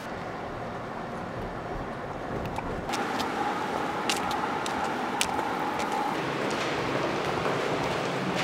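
Low rumble of a car driving, heard from inside the cabin. About three seconds in it changes to outdoor ambience with a faint steady tone and scattered sharp clicks of footsteps.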